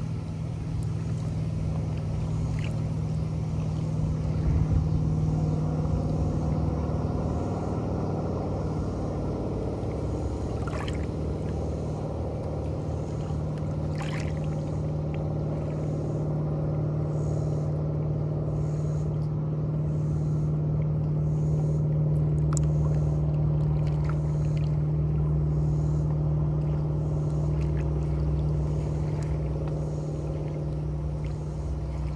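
A motorboat engine droning steadily across the lake as a low, even hum that swells slightly around the middle. Water laps against the shoreline rocks underneath, with a few small splashes.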